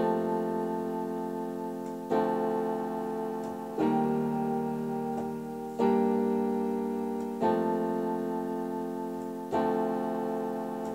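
Digital piano playing slow, sustained chords, a new chord struck about every two seconds and left to ring and fade, as the instrumental intro before the vocals come in.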